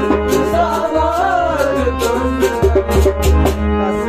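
A man singing a Kashmiri sad song in a sliding, ornamented line over held harmonium chords, with a steady percussion beat.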